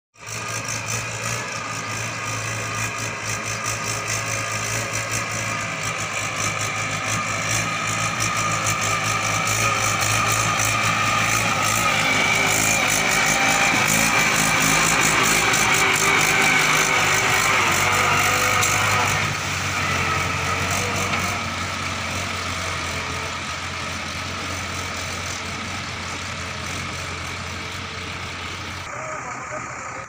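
Diesel engines of tractors and loaded trucks running on a muddy track, a steady low engine drone throughout. It is loudest around the middle, as a Mahindra 475 DI tractor works through the mud close by, and its pitch drops slightly a little past halfway.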